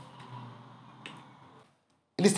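Quiet room tone with two faint, brief clicks, one near the start and one about a second in, then the sound cuts off to dead silence near the end.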